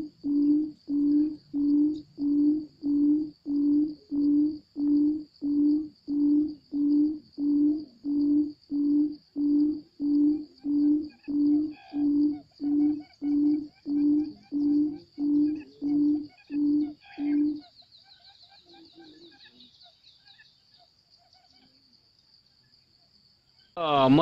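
A bird's low hooting call: one short note repeated evenly, about three every two seconds, about 25 times. It stops abruptly about two-thirds of the way through, leaving faint chirps and a thin high steady tone.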